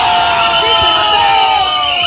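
Several men shouting one long, held celebratory cry together, over crowd cheering; the cry sags slowly in pitch.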